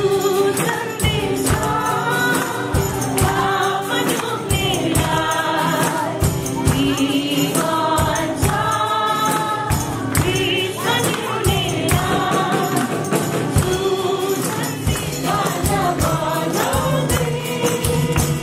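A worship group singing a gospel song together in unison, accompanied by two acoustic guitars and a tambourine keeping a steady beat.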